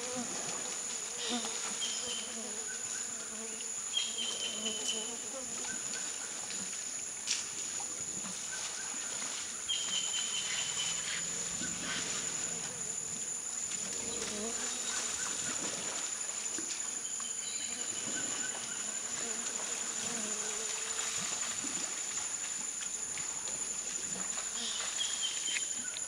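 Steady, high-pitched buzzing of a rainforest insect chorus, with a short high call repeating every few seconds.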